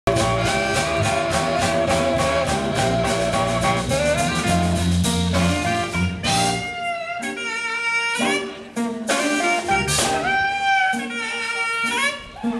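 A live jazz-blues trio playing electric guitar, saxophone and drum kit. The first half has a steady beat with a full low end. About halfway through the low end drops away, and long held notes with slight bends ring out over sparser drumming.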